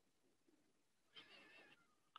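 Near silence, broken about a second in by one faint, short, wavering pitched sound lasting about half a second.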